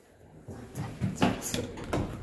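A quick series of short knocks and clicks in a small lift car, starting about half a second in.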